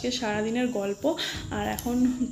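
A woman's voice on drawn-out pitched notes, like singing, with a short break about a second in.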